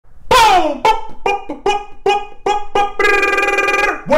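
A man's voice in a short sung or chanted intro: one falling cry, then a quick run of short syllables on the same pitch, ending in a note held for about a second.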